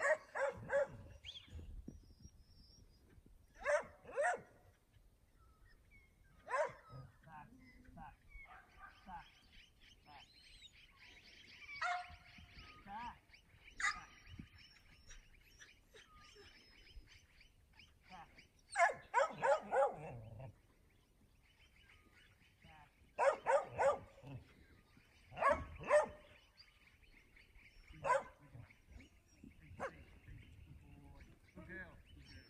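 A working kelpie barking in short bursts, sometimes single barks and sometimes three or four in quick succession, over a faint steady high-pitched hiss.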